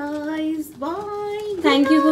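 A woman singing in a playful sing-song, drawing out long held notes, with a short break about two-thirds of a second in and the pitch sliding between notes.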